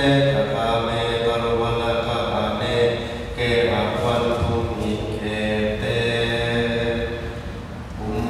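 A group of Buddhist monks chanting a Pali paritta in unison, a steady, low recitation in long phrases. There is a brief pause about three seconds in and another near the end.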